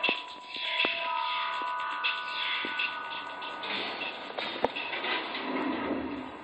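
Level 1 Entertainment studio logo sound effect, an electronic whooshing hiss with a few held tones and scattered sharp clicks, heard through a TV speaker.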